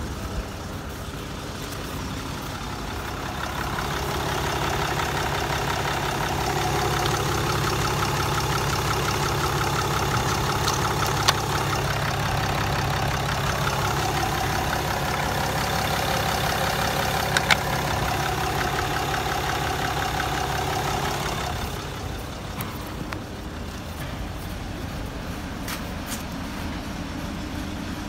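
Mercedes-Benz E-Class CDI diesel engine idling steadily, louder through the middle stretch, with a couple of brief sharp clicks.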